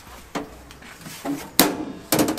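Knocks and clatter of the sheet-metal side cover of a MIG welder being handled and swung open, the sharpest knock about one and a half seconds in.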